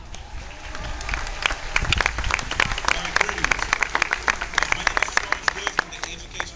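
Crowd applause: many hands clapping, some sharp and close by, with voices in the crowd. It builds up about a second in and dies away near the end.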